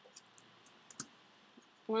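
A few computer keyboard keystrokes clicking at irregular intervals, the loudest about a second in, while code is being edited.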